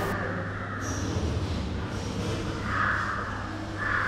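Muffled underwater noise from a camera dipped into a hot spring pool: a steady low rumble with the higher sounds dulled.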